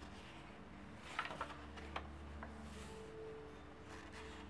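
A sketchbook page being turned by hand: faint paper rustles and light taps about a second in, with a few more soon after, over a faint steady low hum.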